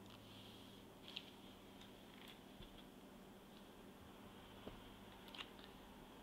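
Near silence: room tone with a few faint, soft ticks as the pages of a 12 x 12 paper pad are handled.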